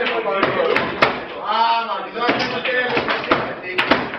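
Foosball table in play: the hard ball and spinning rods knock sharply against the table, loudest about a second in and near the end, over players' voices.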